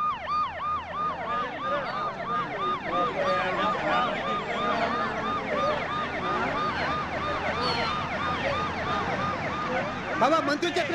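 Sirens on a convoy of cars, each giving a fast rising-and-falling yelp about three times a second; from about three seconds in, two or more sirens sound at once, out of step with each other.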